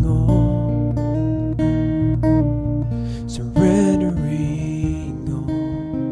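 A song played on strummed acoustic guitar, with a deep low note held under it through the first half.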